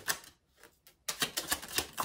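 A deck of tarot cards shuffled by hand: quick light clicks that stop for about three-quarters of a second shortly after the start, then carry on.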